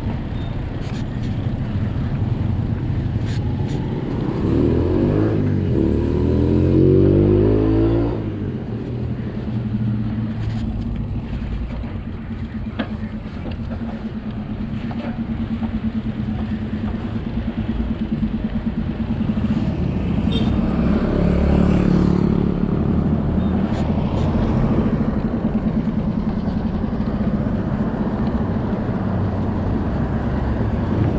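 Riding noise of a mountain bike on a concrete street: tyre rumble and wind on the microphone. A motor sound rises and falls in pitch and is loudest about five to eight seconds in, and a steady hum runs under most of the rest.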